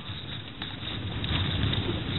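Car engine and tyre noise heard from inside the moving car's cabin, a low rumble that grows louder through the second second.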